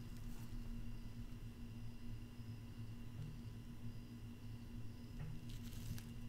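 Low steady hum under faint rustling of disposable plastic gloves handling a plastic coin capsule, with a brief crackle near the end.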